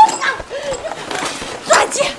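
Two people shouting and crying out with effort as they struggle over belongings, with a burst of rustling scuffle near the end.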